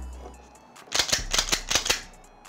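A quick run of sharp metallic clicks about a second in, from the slide and action of a Gen 5 Glock 19 being worked by hand with a GoSafe Mobile Safe magazine seated. The pistol still cycles normally with the magazine in.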